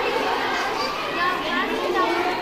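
Many young children's voices chattering and calling out at once, a continuous overlapping hubbub.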